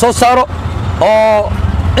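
A man talking, with one long drawn-out vowel about a second in, over the steady low rumble of the auto-rickshaw he is riding in.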